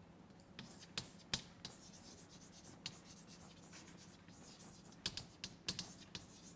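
Chalk writing on a blackboard: faint, short scratches and taps of the chalk, coming in scattered clusters as the letters are written.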